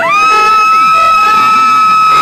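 A loud, high-pitched cheering whoop from an audience member, sliding up at the start and then held steady on one note, with the band's playing pushed far back beneath it.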